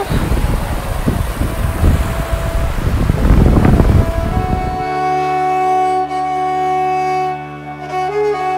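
Wind buffeting the microphone for about the first five seconds, then an abrupt switch to background music of sustained bowed strings like a violin.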